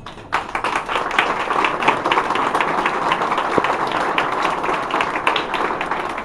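Audience applauding: many hands clapping at once, a dense, even patter that starts a moment after the beginning and holds steady.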